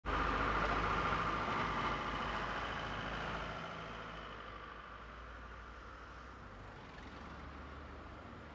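A road vehicle going past, loudest at the start and fading away over about four seconds, leaving a quieter steady background.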